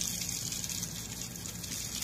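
Water running in a steady, even gush.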